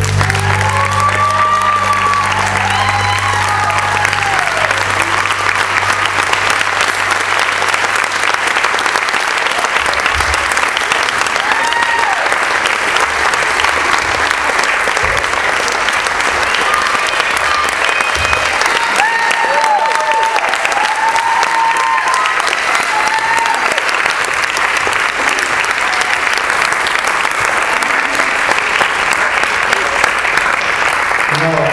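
A theatre audience applauding steadily after a live song, with scattered cheers and whoops rising above the clapping. The band's last low note dies away over the first several seconds.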